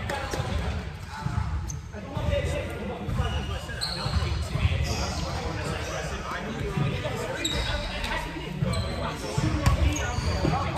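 Basketball bouncing on a hardwood gym floor: irregular dull thuds from dribbling and rebounds in a large gym, with a few short high squeaks.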